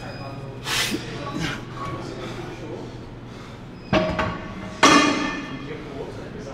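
Metal gym equipment clanking twice near the end, about a second apart, the second strike the loudest and ringing briefly as it fades. Earlier come a couple of short, breathy bursts over a steady low hum.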